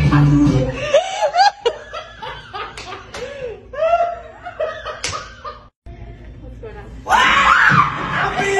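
A man laughing hard in repeated bursts, with two sharp smacks, one about a second and a half in and one about five seconds in. Music plays at the start and returns near the end.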